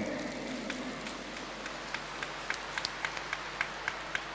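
Large audience beginning to applaud: scattered single claps over a steady crowd hum, coming more and more often toward the end.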